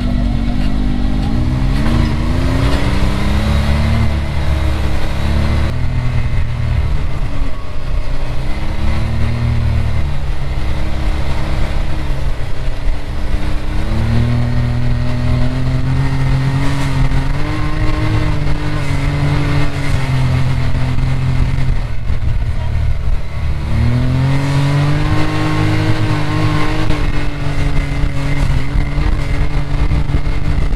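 Can-Am Maverick X3 side-by-side's turbocharged three-cylinder engine driving off-road, heard from the cockpit, its pitch climbing and dropping again several times as the throttle is opened and eased off.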